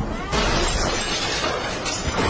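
Film sound effect of a red box being smashed to pieces, a loud shattering crash with a clatter of flying debris that starts a moment in and lasts about a second and a half.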